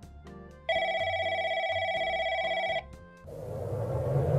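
A telephone rings once, a warbling trill lasting about two seconds, over soft background music. Near the end a rising whoosh begins.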